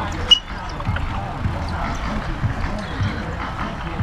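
Distant background chatter of voices over a steady low rumble of wind on the microphone. One sharp knock about a third of a second in is the loudest thing heard.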